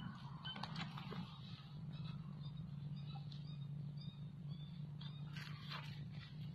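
Faint steady low hum with a few light scattered ticks and rustles, and a few faint short high chirps in the middle.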